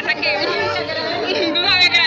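Excited women's voices talking over one another and shouting with joy, with high, rising shrieks near the end.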